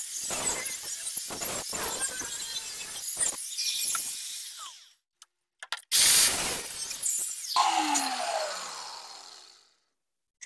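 Electric cut-off tool grinding through metal with a harsh, hissing rasp that stops about five seconds in. After a short pause it cuts again in a loud burst, then the motor winds down with a falling pitch.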